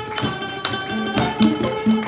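Đàn nguyệt (Vietnamese moon lute) and acoustic guitar playing together: a run of sharply plucked single notes from the lute over the guitar.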